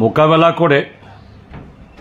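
A man speaking Bengali into microphones for just under a second, then pausing for about a second.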